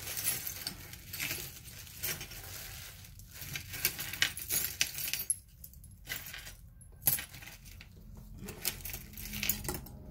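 Small metal jewelry pieces jingling and clinking together as they are rummaged through and handled, in irregular light clinks.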